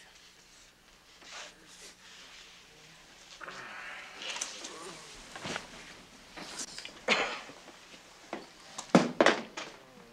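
Faint, indistinct voices in a small enclosed space, with a few sharp knocks or clacks, most of them in the last second or so.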